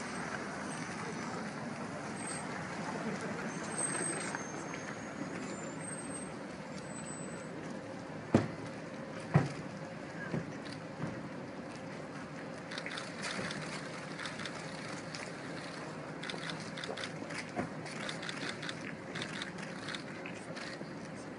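A Range Rover drives slowly past and pulls up, over steady outdoor background noise with low voices. Two sharp knocks about a second apart, some eight seconds in, are the loudest sounds, followed by a run of light clicks over the last several seconds.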